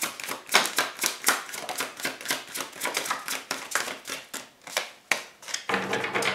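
Tarot deck being overhand-shuffled by hand, a quick run of card riffles about four or five a second, thinning out after about four seconds with one sharper snap of cards about five seconds in.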